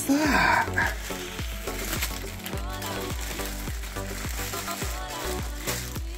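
Clear plastic packaging crinkling and rustling as a wrapped present is unwrapped, over background music with a steady beat. A child's excited exclamation comes right at the start.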